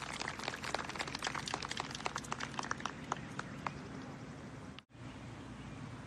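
Scattered hand-clapping from a small golf gallery greeting a holed putt, thinning out and dying away after about three and a half seconds. After a sudden cut, there is quiet outdoor ambience.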